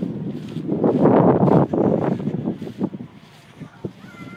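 Wind buffeting the microphone: a gust swells about a second in and dies away about two seconds later.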